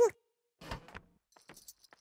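A short rustle, then faint light metallic jingling of a tambourine's jingles as it is carried along.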